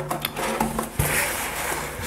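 A cardboard whisky gift box is handled and moved on a wooden table: a few light clicks, then a knock about a second in as it is set down, followed by a soft rubbing hiss.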